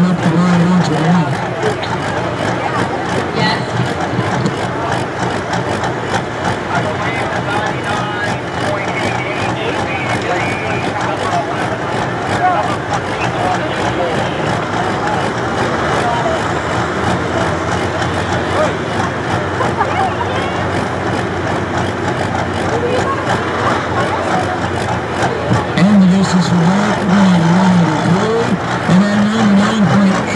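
Pulling tractor's engine running at idle while hooked to the sled, under a background of people talking; about four seconds from the end its pitch rises and falls repeatedly as it is revved and moves off.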